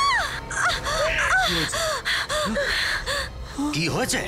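A woman's frightened cries: a high scream tails off right at the start, then a run of short, high, gasping yelps for about three seconds, over dramatic background music. A lower voice comes in near the end.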